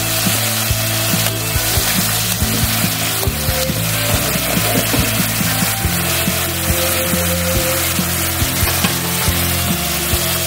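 Hilsa fish steaks sizzling in a bubbling mustard and poppy-seed paste in a wok, with a wooden spatula scraping and clicking against the pan.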